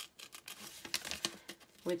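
Small sharp scissors cutting out a printed paper picture: a scattered series of short, soft snips and paper rustles.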